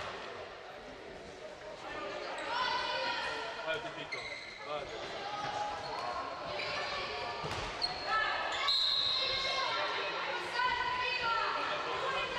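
Handball bouncing on a wooden sports-hall floor as players dribble, a few separate thuds, with high-pitched girls' voices calling out across the hall.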